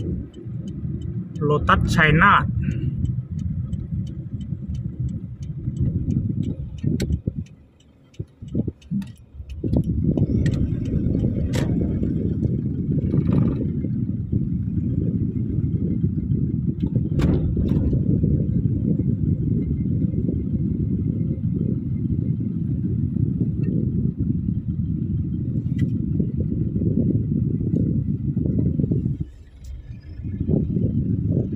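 Inside a moving car's cabin: a steady low rumble of engine and tyre noise. It drops away briefly about eight seconds in and again just before the end, with a few sharp clicks scattered through it.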